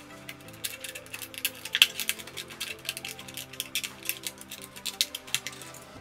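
A utility cutter blade cutting through a thin clear plastic bottle, giving an irregular run of sharp clicks and crackles, over background music.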